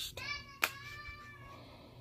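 A single drawn-out, meow-like call that falls slightly in pitch, with a sharp click about halfway through.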